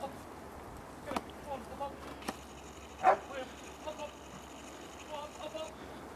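A search dog barking in short, scattered bursts at a distance across the open crag, with a few sharp knocks, the loudest about three seconds in.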